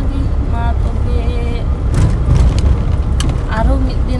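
Steady low rumble of a car's engine and tyres heard inside the cabin of a moving car. Two brief knocks come about two and three seconds in.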